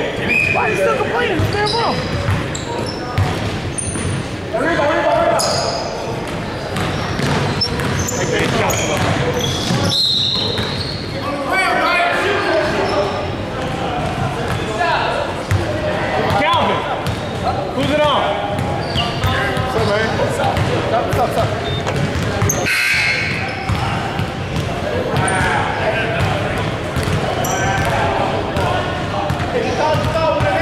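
Indistinct voices and calls of basketball players echoing in a large gymnasium, with a basketball bouncing on the hardwood court now and then.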